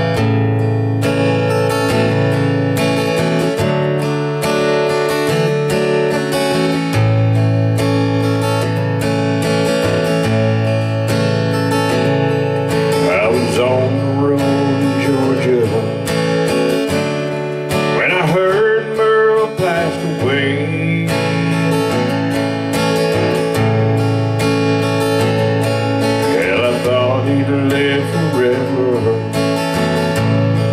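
Steel-string acoustic guitar strummed steadily, playing the intro chords of a country ballad. A few wavering, sliding notes rise over the strumming in the middle and near the end.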